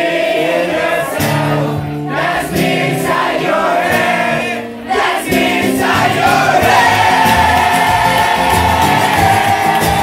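Live folk-punk band playing loud: strummed acoustic guitar and sung vocals, with the crowd singing along. The music breaks off briefly twice, about two and five seconds in, then carries on fuller and steadier.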